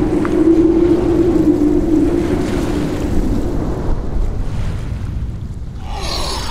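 Steady wind ambience with a low rumble and a held low tone in the first half, growing softer toward the end.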